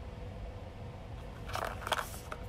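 A small cardboard box handled and turned over in the hands: a brief scuffing rustle near the end, over a faint steady hum.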